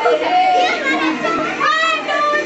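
Several girls' voices overlapping, calling out and chattering in high pitches as they play a ring game.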